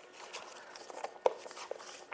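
Small handling noises at a desk: a few soft rustles and light taps, with one sharper click a little over a second in.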